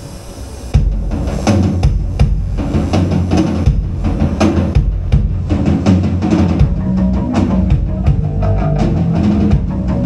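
Live rock band kicking into a song about a second in, the drum kit loud and driving with bass and guitars under it. Held guitar notes come in about two-thirds of the way through.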